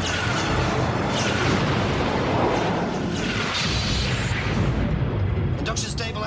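Sci-fi space-battle sound effects: phaser fire and explosions making a dense, continuous rumble, with swells about a second in and again around four seconds, over orchestral battle music.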